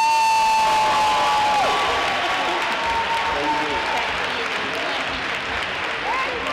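Audience applauding, with a long drawn-out vocal call over the clapping at the start and a few shorter whoops after it.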